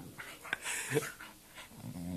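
Dog growling and whining in short calls while playing with a cat.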